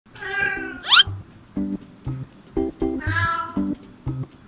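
A domestic cat meows twice, a long meow at the start and another about three seconds in, each falling slightly in pitch. A quick rising squeak comes just before the first second, and light plucked-string background music starts about a second and a half in.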